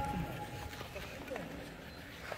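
Quiet, echoing indoor ice-rink ambience: the tail of a shout rings out in the arena for under a second, then low room noise with a brief faint voice about a second and a half in.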